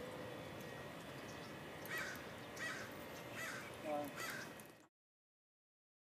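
A bird calling four times in short calls less than a second apart, over steady outdoor background noise. The sound cuts off abruptly a little before the end.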